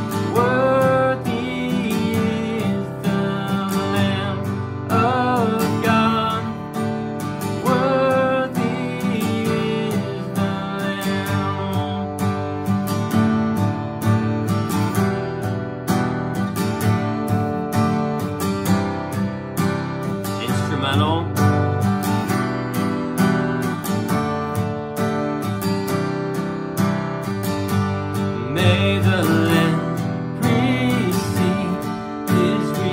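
Acoustic guitar strummed steadily through an Em–D–C–G chord progression, with a man's voice singing over it in the first few seconds and again near the end.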